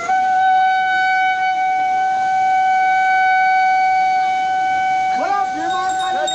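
A horn blown in one long, steady note at a single pitch; voices call out near the end.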